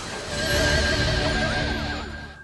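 Short musical sting for a TV news programme's logo bumper, swelling about half a second in, with a wavering, warbling tone over a steady wash of sound.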